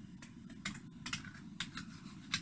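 Scissors cutting thin mirror-polished SUS304 stainless steel foil, 70 microns thick: an irregular run of sharp, crisp snipping clicks as the blades bite through the metal.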